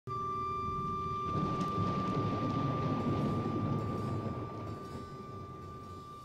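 Opening sound design: a steady high tone sets in at once, and a deep rumble swells under it about a second in, then slowly fades toward the end.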